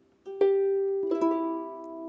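Clarsach (Scottish harp) strings plucked one at a time: a note about half a second in and a higher one about a second in, both left ringing. It is a beginner slowly picking out the first phrase of a lullaby.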